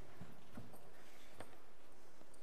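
A few faint, irregular footsteps tapping as a girl walks up to a lectern.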